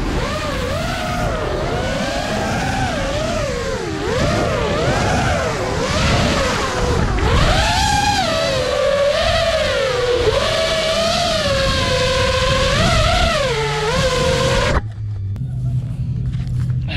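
FPV quadcopter's motors and propellers whining, the pitch rising and falling with the throttle. The sound cuts off suddenly near the end as the motors stop.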